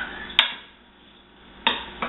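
Wooden spoon knocking against a nonstick skillet of ground meat sauce while stirring: a sharp click about half a second in, a quiet moment, then another knock near the end.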